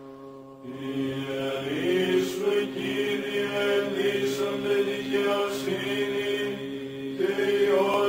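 Greek Orthodox Byzantine chant: voices singing long held notes, coming in about a second in after a brief lull.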